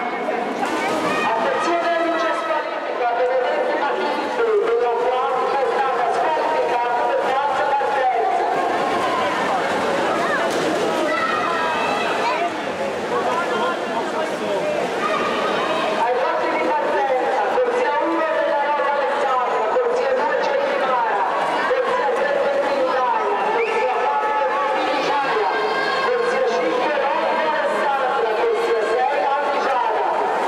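Many voices at once in an indoor swimming-pool hall, with spectators talking and calling out over each other in a steady babble throughout a swimming race.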